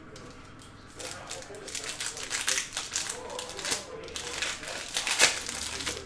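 Foil wrapper of a Panini Revolution basketball card pack crinkling and tearing as the pack is opened by hand, irregular crackles starting about a second in.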